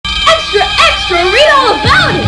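Short calls that rise and fall in pitch, several in a row, over a sustained music chord.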